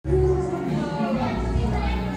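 Indistinct voices of several people talking, with music playing underneath.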